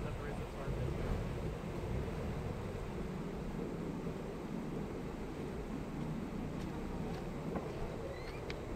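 Off-road vehicle's engine idling while stopped, a steady low rumble.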